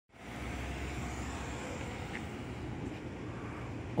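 Distant road traffic, a steady low hum. A deeper rumble underneath eases off about a second and a half in.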